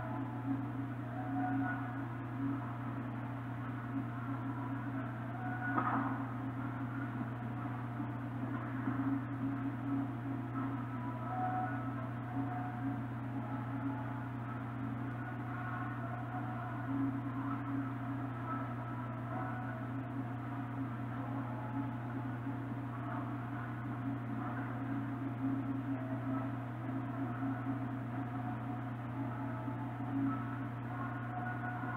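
A steady low hum with faint, muffled tones drifting in and out over it, and one brief louder sound about six seconds in.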